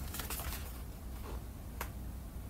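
Pages of a paper booklet being turned and handled: a few short, crisp paper rustles, the sharpest one near the end, over a low steady hum.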